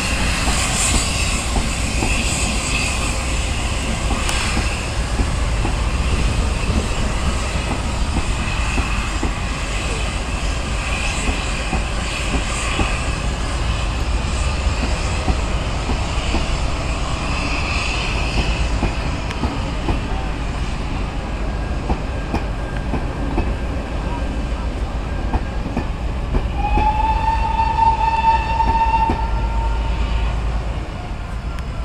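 Steam-hauled train of coaches pulling out behind GWR Castle class 4-6-0 No. 5043, the coaches rumbling and clattering over the pointwork, with short high squeals coming and going. Near the end a steady high tone sounds for about three seconds.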